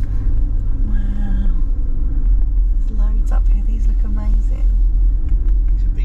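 Steady low road and engine rumble inside a car's cabin as it drives slowly, with a few brief murmured voices over it.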